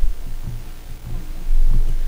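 A low hum with dull, low thumps on the room's microphones, louder in the second half.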